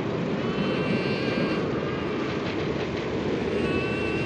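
Steady industrial drone from a film soundtrack: a dense low rumble with faint, thin high tones held above it.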